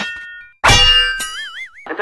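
Cartoon-style comedy sound effects: a sudden loud metallic clang with a long ring about half a second in, followed by a tone that wobbles up and down.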